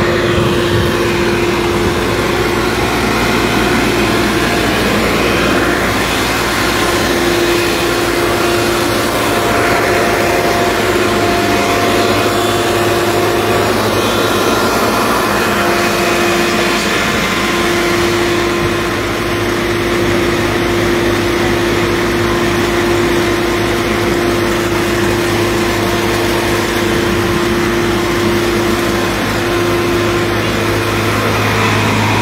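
Portable flood-water pump's engine running steadily with a constant hum, water gushing from its discharge hose.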